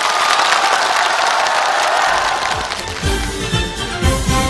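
Studio audience applauding. About three seconds in, a band's upbeat intro to the next song starts under the applause.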